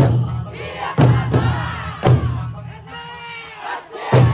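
Eisa troupe's large barrel drums (ōdaiko) struck together in hard, booming beats, four in the first two seconds, under the group's loud shouted calls.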